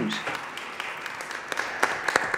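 Audience and panel applauding, the applause rising, with individual hand claps growing sharper and more frequent near the end.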